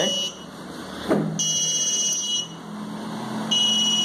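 Grove piezo buzzer module beeping a high-pitched electronic tone, switched on from a web app through an Intel Galileo Gen 2 board. The beeps last about a second, with gaps of about a second between them.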